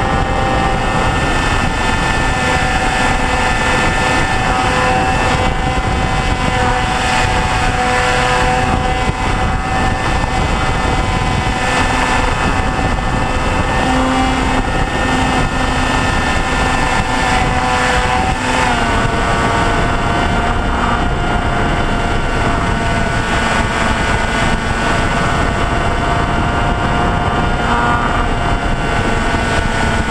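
Motor and propeller of a small RQ-11 Raven-type unmanned aircraft, heard from a camera on board in flight: a steady whine over a rush of air. About two-thirds of the way through, the whine drops a step in pitch.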